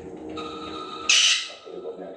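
An Alexandrine parakeet giving one short, harsh screech about a second in.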